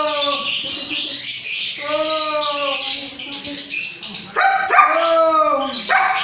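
A dog barking in drawn-out calls, three of them about two seconds apart, over a steady high-pitched background hiss.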